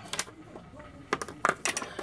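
About half a dozen short, sharp clicks and taps at irregular spacing, some in quick pairs.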